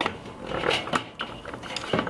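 A wooden grilling plank scraped and knocked against a metal grill grate as it is moved off the fire, with metal tongs clinking: a run of short knocks and scrapes.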